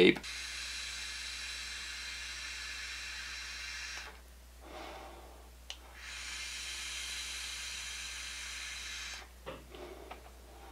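Two long direct-lung draws on a Kimsun Air 10 pod vape with a 0.25-ohm coil. Each is a steady hiss of air pulled through the pod while the coil fires, the first about four seconds long and the second about three. A soft exhale comes between them, followed by a single small click.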